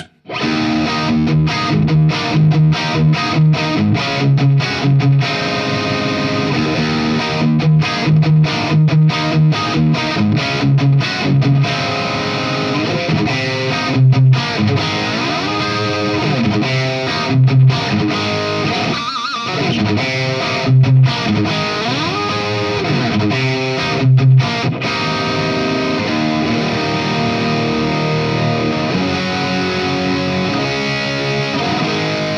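Distorted electric guitar from a Washburn N4 through a valve amp rig, played as riffs of short, low chugging notes with short stops, then ringing chords with notes bending in pitch in the second half. The guitar's Floyd Rose bridge is in its original state, without the FU-Tone brass big block, stopper or noiseless springs, with no effects or post-processing.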